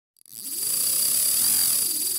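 Whooshing, hissing sound effect for an animated liquid logo. It fades in about a quarter second in and holds steady and loud.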